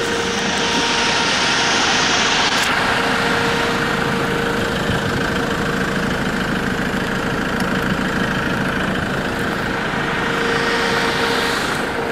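Off-road vehicle engine running steadily while driving slowly over a rough dirt track, with a steady whine over the rumble.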